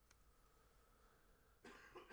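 Near silence: room tone, with a faint short rush of noise near the end.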